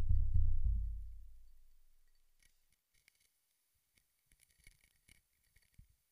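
A deep rhythmic throbbing, about five pulses a second, stops just under a second in and dies away over the next second. It leaves near silence broken by a few faint ticks and scratches.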